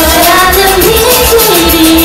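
Pop music with a steady beat and women singing a gliding melody into microphones over the backing track.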